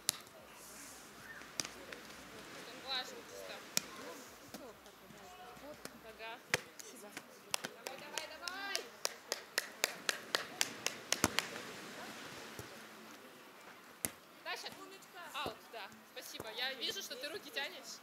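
Beach volleyball being played: a few single sharp hits of the ball, and a quick run of sharp smacks about four a second for several seconds near the middle, with distant voices of players and onlookers throughout.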